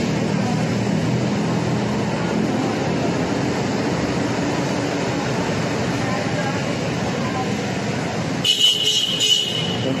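City road traffic: cars driving past close by, with a steady rumble of engines and tyres. About eight and a half seconds in, a brief shrill high-pitched sound cuts in for about a second.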